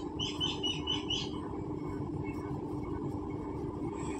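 A bird chirping: a quick run of short high chirps in the first second or so, over a steady low hum.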